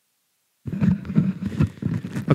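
Dead silence that cuts off abruptly about two-thirds of a second in, followed by a voice talking in a room.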